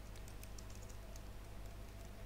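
Faint computer keyboard typing, scattered light key clicks, over a faint steady electrical hum.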